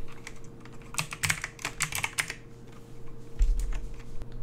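Typing on a computer keyboard: a quick, uneven run of keystroke clicks, densest from about one to two seconds in, over a faint steady hum. A brief low bump comes near the end.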